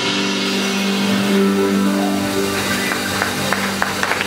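Live rock band ringing out a held final chord: electric guitar and bass sustaining steady notes under a wash of cymbals, with a few sharp hits near the end.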